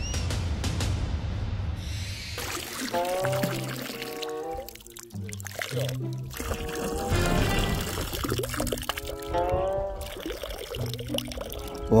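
Water pouring and trickling out of a plastic bottle fish trap as it is lifted from a river. Background music comes in about two seconds in and runs over it.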